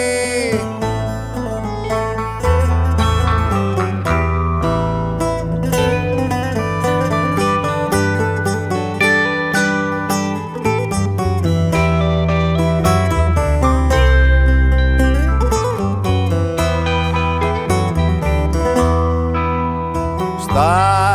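Live band playing an instrumental passage between sung verses: plucked string instruments play a run of quick notes over a steady bass line, with no singing.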